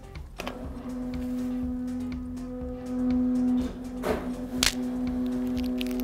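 Stepper motor whining on one steady pitch as it drives the candy-throwing robot's chain and arm, louder about three seconds in. A sharp snap comes about four and a half seconds in as the spring-loaded throwing arm fires.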